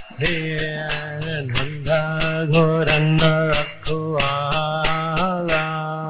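A man sings a devotional chant while striking karatalas (small brass hand cymbals) in an even rhythm of about three strikes a second. The singing comes in just after the start, over a steady low drone.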